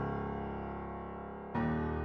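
A piano-like software instrument plays sustained low bass notes, each doubled an octave higher. A new note pair comes in about one and a half seconds in.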